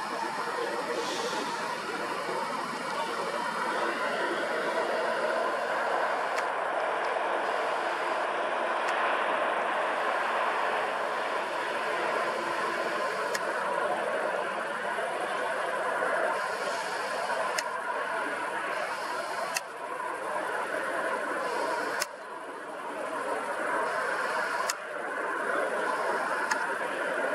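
Steady noise of road traffic, with a few faint clicks scattered through it.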